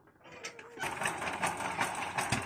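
Single-cylinder diesel engine of a công nông farm tractor being hand-cranked to start: a quick, even mechanical clatter that sets in and grows louder about a second in.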